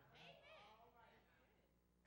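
Near silence, with a faint, brief voice in the first second.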